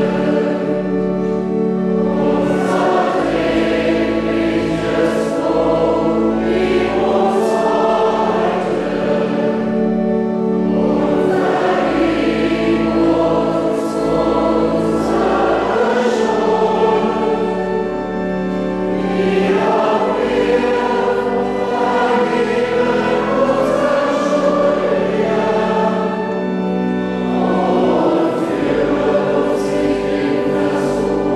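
A choir singing a slow sacred piece in sustained chords, its phrases swelling and changing every few seconds.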